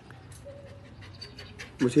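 A Belgian Malinois dog whimpering faintly, a short thin whine, before a man's voice begins near the end.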